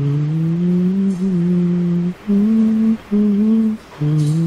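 A man humming a slow melody close to a headset microphone: one long held note of about two seconds, then two shorter, slightly higher notes with brief breaks between them.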